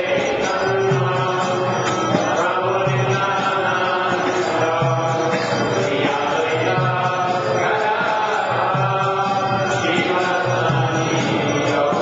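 Kirtan: devotional mantra chanting, sung continuously at a steady level.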